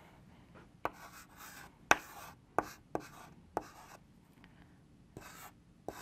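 Chalk writing on a blackboard: sharp taps as the chalk strikes the board and short scratchy strokes, in a few bursts with a quiet gap a little past the middle.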